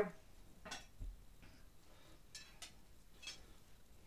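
Faint handling noise from a metal lead screw being checked for length: about five separate light clicks and metallic ticks, spread out and irregular.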